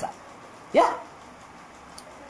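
A single short yelp that sweeps sharply up in pitch, a little under a second in, over low steady room hiss.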